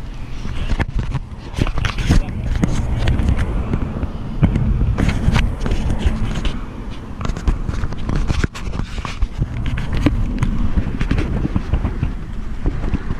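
Handling noise on a handheld camera: fingers rubbing and knocking on the body near the microphone, with many sharp clicks and scrapes over a heavy low rumble.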